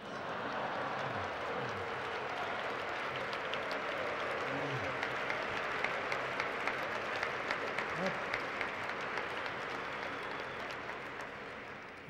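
Large audience applauding, dense steady clapping with crowd voices mixed in, tapering off near the end.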